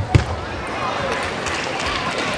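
Table tennis ball struck by a racket during a rally: one sharp click just after the start, over steady arena background noise.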